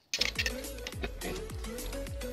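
Background music with a steady beat: a punchy kick drum that drops in pitch on each stroke, under a repeating melody. It cuts back in after a brief dropout right at the start.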